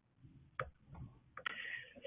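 A pause on a quiet call line, with a couple of faint clicks about half a second and a second in, and a soft hiss near the end.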